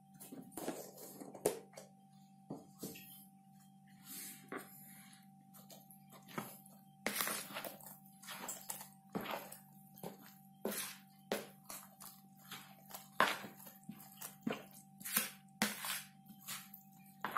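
Bare hand kneading and squishing wet grated potato batter with fried pork cracklings and onion in a plastic bowl, making irregular wet squelches and smacks over a faint steady hum.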